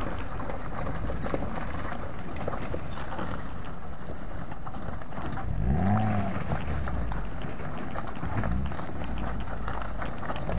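Maruti Gypsy 4x4 crawling over a bed of loose river stones, the rocks clattering and knocking under its tyres, with its engine running underneath. About six seconds in, the engine revs up and back down.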